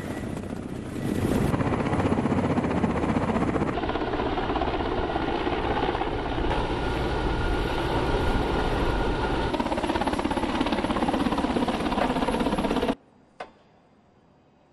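Russian military attack helicopters flying low past, a loud steady rotor and turbine noise that cuts off suddenly about a second before the end.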